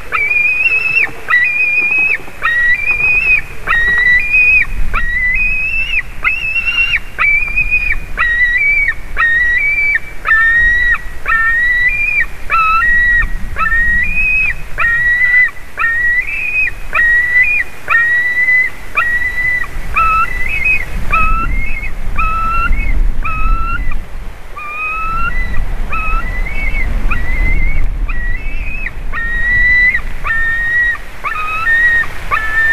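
White-tailed eagle nestling begging with a long run of short, high whistled calls, about one and a half a second, each dropping in pitch as it ends. A low rumble comes and goes beneath the calls.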